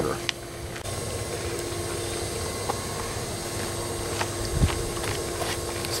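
Pool filter pump running: a steady hum with a faint tone, with a few light clicks and a low thump about four and a half seconds in.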